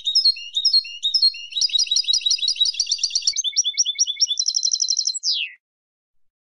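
Female European goldfinch's chattering song: one continuous phrase of quick twittering notes and trills, ending with a fast trill and a falling note about five seconds in.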